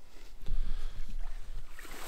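Wind buffeting the microphone outdoors: an uneven, gusting low rumble that starts about half a second in.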